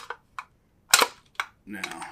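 A sharp snap about a second in, with a couple of lighter clicks around it, from a small metal survival tin and its magnet being handled.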